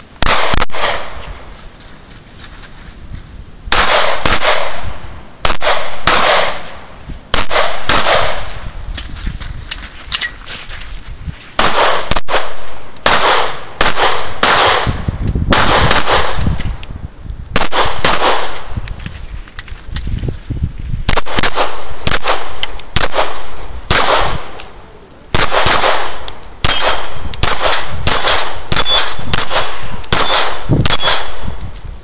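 Handgun shots fired in quick pairs and short strings, with pauses of a second or more between strings. Near the end, hits ring off steel plates.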